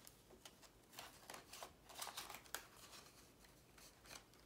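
Faint rustling and ticking of paper bills and clear plastic binder envelopes being handled as cash is tucked in and the envelopes are turned, with one sharper click about two and a half seconds in.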